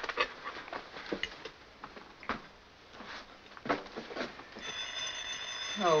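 A few light clinks of china and cutlery on a table, then about four and a half seconds in a telephone bell starts ringing, a steady ring of several high tones held together.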